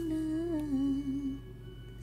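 A single voice humming a slow, wavering melody with no accompaniment, fading out about a second and a half in.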